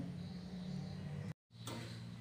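A steady low hum over faint hiss, broken by a short dead gap of silence just under a second and a half in.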